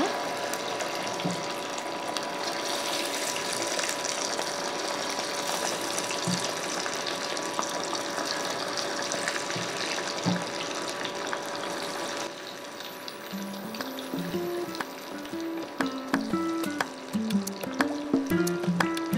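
Chicken pieces deep-frying in hot oil in a kadai: a steady, even sizzling and bubbling. About two-thirds of the way through, background music with a simple melody comes in over the frying.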